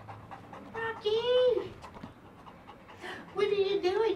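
Large black dog panting while being petted, with a woman's voice in one long rising-and-falling exclamation about a second in and talk starting near the end.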